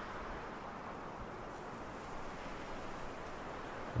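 Steady, soft wash of ocean-wave ambience.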